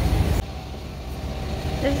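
Low rumbling outdoor street noise on a handheld phone microphone, which drops off suddenly about half a second in and leaves a quieter street background.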